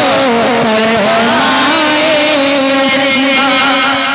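A man singing a naat unaccompanied into a microphone over a PA system, in long held notes that waver and slide in pitch.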